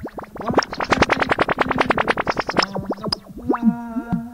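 Electronic music: a synthesizer through effects plays a fast stuttering run of short repeated notes for about two seconds, then goes on with gliding pitched tones.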